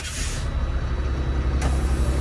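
Truck diesel engine idling steadily, with a sharp click right at the start and a short hiss of released air from the air-brake system as a dash brake-valve knob is worked.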